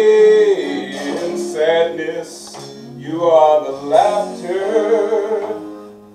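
A man singing a slow melody in long held notes that bend in pitch, over a sustained instrumental chord.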